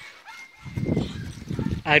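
Excited chained yard dog making a low, rough, pulsing sound that starts about half a second in and lasts about a second.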